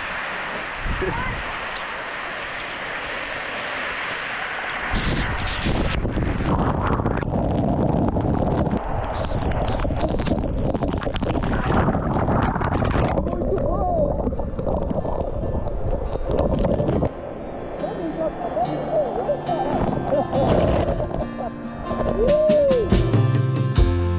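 Water from a flowing artesian well's high-pressure jet showering down close over the microphone, a dense hiss of spray that turns heavier and lower about five seconds in. Guitar music comes in near the end.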